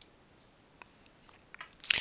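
Near silence with a few faint ticks, then a short breath intake and mouth noise from the narrator near the end, just before he speaks again.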